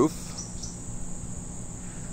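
Steady, high-pitched chirring of insects, with a faint low hum underneath.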